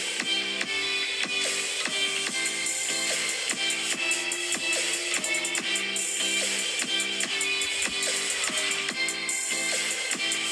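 Background electronic music with a steady beat.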